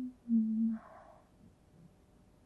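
A woman's closed-mouth 'mm-hm': two short steady hums, the second a little lower and longer, followed by a faint breathy sound.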